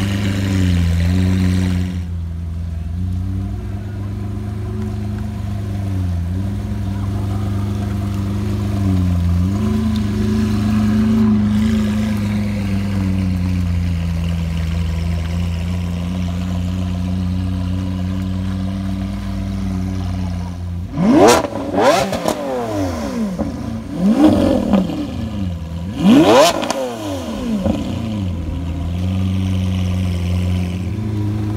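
Lamborghini Aventador SV's V12 running at low speed as the car pulls away, then three sharp throttle blips a few seconds apart near the end, each rev shooting up and falling straight back.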